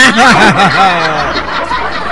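A person laughing: one long, wavering laugh that falls in pitch and trails off after about a second, followed by a rougher, breathier stretch of laughter.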